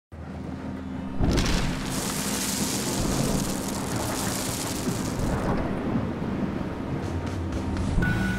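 Intro sound effect: a low rumble that jumps to a loud, noisy crash about a second in and slowly fades, over background music with low held notes.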